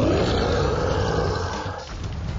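A loud, beast-like roar sound effect. It rises in pitch right at the start, holds for about a second and a half, then fades out.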